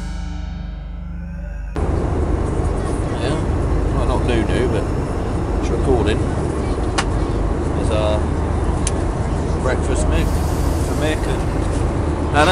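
A short stretch of music fades out, and about two seconds in it gives way to the steady hum of an airliner cabin, with passengers' voices chattering faintly now and then.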